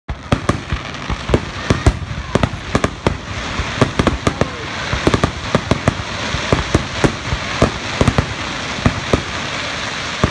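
Aerial fireworks going off: a rapid, irregular string of sharp bangs, several a second, over a steady noisy rush.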